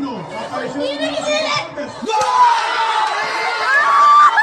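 Several overlapping voices of a small group exclaiming and talking, with crowd-like background noise. About halfway through the sound swells into a louder, noisier burst of voices as the group's celebration begins.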